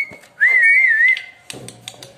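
A clear whistle: a short note, then a longer note whose pitch wavers up and down several times, lasting under a second. A few light knocks follow near the end.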